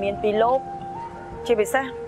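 Soft background music of long held synthesizer notes, shifting pitch in steps, with a man talking over it in short phrases.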